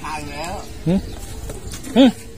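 A man speaking short Thai phrases in bursts.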